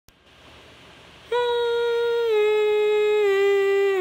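A woman humming a slow descending phrase of about four held notes into a microphone, starting about a second in, the last notes with a slight vibrato.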